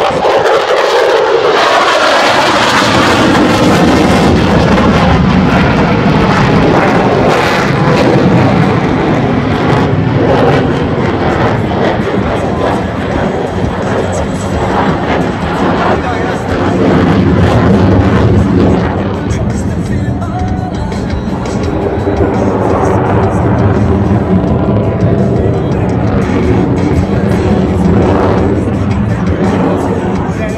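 F-16 Fighting Falcon jet engine, loud and rushing as the jet flies a double Immelmann, falling in pitch over the first few seconds. Music plays underneath.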